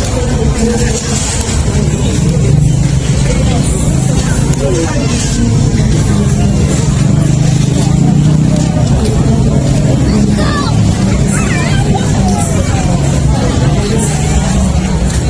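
Crowd chatter and background voices at a busy outdoor food market, over a steady low rumble.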